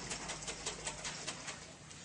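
A lidded glass jar of lemon juice and oil shaken hard, in quick rhythmic strokes of about six a second that die away near the end.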